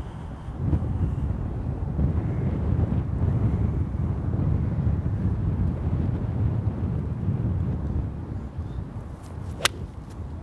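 Wind buffeting the microphone as a steady low rumble, then near the end a single sharp click: an 8-iron striking a golf ball, with solid contact.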